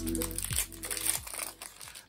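Short background music fading out within the first second or so, with crinkling of plastic packaging as a trading-card pack is handled.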